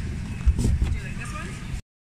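Pumpkins being handled in a cardboard bin: a dull thump about half a second in over low rumbling handling noise, with faint voices behind. The sound cuts off suddenly near the end.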